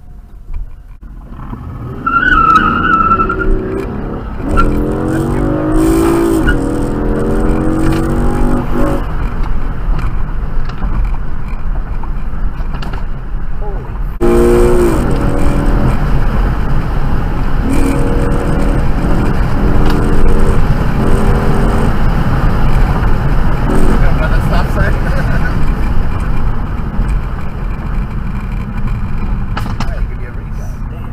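Car engines accelerating hard, heard from inside a car's cabin. The revs climb and drop back with gear changes in two hard pulls, the second starting with a sudden jump in loudness about fourteen seconds in, over steady road rumble.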